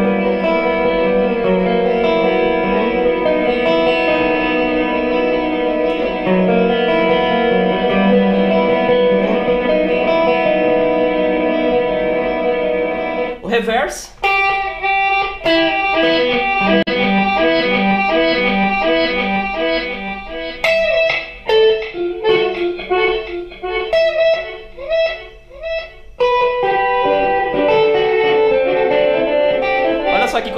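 Electric guitar played through a Boss ME-70 multi-effects pedal with its modulate (modulated) delay switched on. It begins with sustained chords ringing together in a thick wash of repeats. About halfway through it changes to separate picked notes in a repeating pattern, each followed by echoes, and it returns to sustained ringing chords near the end.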